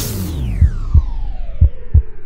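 Electronic channel logo sting: a synthesized tone gliding steadily downward in pitch, over low thumps falling in heartbeat-like pairs about a second apart.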